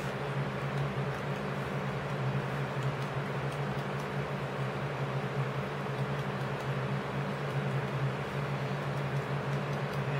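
Steady low hum with an even hiss, unchanging throughout: constant background machine noise.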